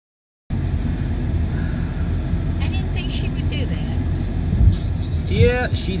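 Steady low road rumble inside a moving car, starting suddenly about half a second in after silence, with a single low thump a little past the middle.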